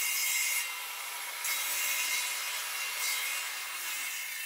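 Circular saw on a guide rail cutting closely spaced kerfs across a plywood panel, the relief cuts that let the plywood bend to a curved hull. A steady motor whine runs under the cutting noise, and the cutting noise swells and eases a few times.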